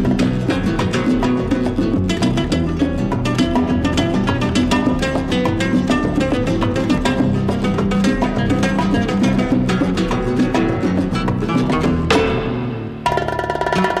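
Flamenco guitar played fast and virtuosically, with bongos keeping a steady rhythm underneath. About twelve seconds in the passage breaks off and a different section of the music begins.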